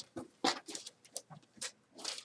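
Paper slips rustling and crinkling as a hand rummages through a box of entries and draws one out, in several short bursts.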